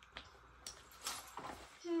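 A few faint clicks and scrapes of a marker pen being handled and touched to a cardboard box, then a child's falling 'hmm' near the end.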